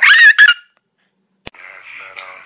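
A man's loud, high-pitched scream lasting about half a second. After a short silence, a click and music start about a second and a half in.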